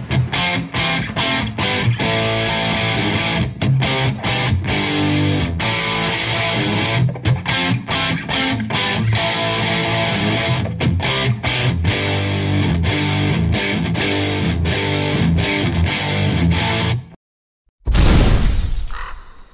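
Distorted electric guitar playing a rock riff, broken by many short, sharp stops. It cuts off abruptly about a second before the end.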